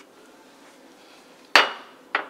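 A porcelain cup clinking against a hard surface: one sharp, loud clink about one and a half seconds in that rings briefly and fades.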